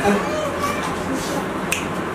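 A grass broom sweeping a concrete floor in short scratchy strokes, with one sharp click near the end. A voice is faintly heard underneath.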